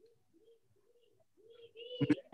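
Faint low bird calls, short arching notes repeated about twice a second, growing louder near the end over near-silent room tone.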